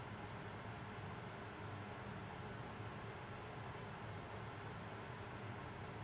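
Quiet, steady background hiss with a low hum underneath: room tone, with no distinct sounds.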